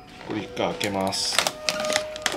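A brief spoken sound, then sharp plastic clicks and crinkling as the lid and foil seal of a smoke-fumigator's plastic cup are opened. A steady musical tone comes in near the end.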